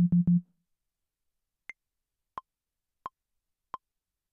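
Two short low notes from the Nexus 3 'Basic Sine' bass preset, then a Maschine metronome count-in: four clicks at 88 bpm, the first higher than the other three, counting in a recording pass.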